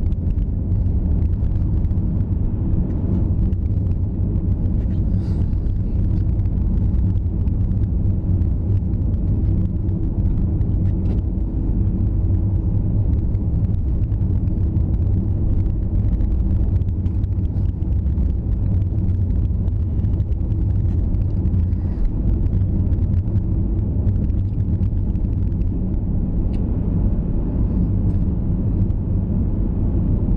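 Car driving at a steady speed on a snow-covered road, heard from inside the cabin: a low, even rumble of engine and tyres.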